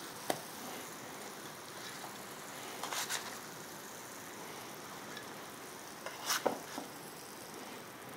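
A spatula working in a nonstick frying pan and setting mushroom steaks onto a ceramic plate: a few light knocks and scrapes, the loudest a short clatter about six seconds in, over a faint steady hiss.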